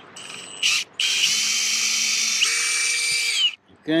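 Cordless drill with a hex nut-driver bit backing out a screw from a metal roof seam: a short burst, then about two and a half seconds of steady whine that steps up in pitch partway through and cuts off suddenly.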